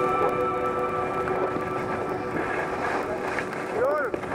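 Background music fading out in the first second, over a steady rush of wind on the helmet microphone and skis sliding on packed snow. A voice starts just before the end.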